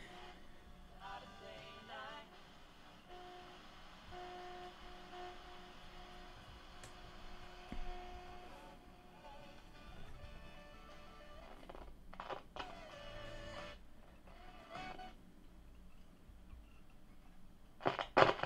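A 1970s RGD Rover portable transistor radio being tuned, playing faint music through its small speaker. Held notes come through for a few seconds, and snatches of other sound come and go as the dial moves.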